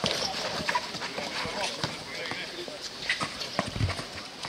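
A basketball bouncing on an outdoor court during a streetball game, with players' footsteps and indistinct voices. The sharp knocks come irregularly, not in a steady dribble rhythm, and the loudest of them are near the end.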